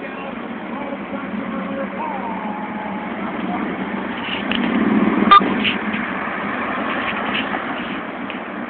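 City street traffic: cars driving past, the noise swelling about four to five seconds in as one goes by, with a single sharp click at its loudest point. Faint voices in the background.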